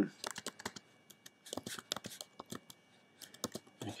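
Typing on a computer keyboard: quick key clicks in short runs, early, around the middle and near the end, as a web address is entered.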